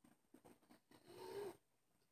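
Faint small rustles, then about a second in a half-second choked, voiced catch of breath, like a tearful sob or sniff, from someone moved to tears.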